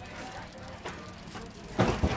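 Road bike drivetrain turned by hand: the chain running over the Shimano Tiagra rear cassette with faint ticking, and a louder knock near the end.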